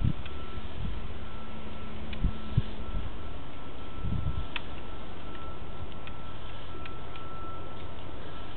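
Sewer inspection camera system recording while its camera head is pulled back through the drain line: a steady electrical hum and hiss with a faint high tone, broken by scattered clicks and a few low knocks.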